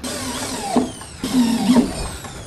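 Power drill whirring overhead in two runs, its pitch falling as it slows.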